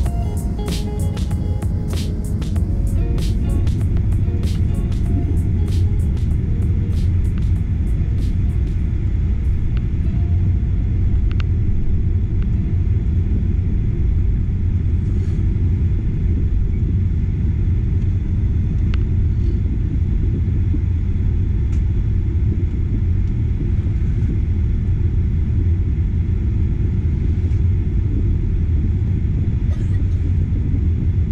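Cabin noise of a Boeing 737-800 taxiing: a steady low rumble from its engines and airframe. Background music fades out over the first nine seconds or so.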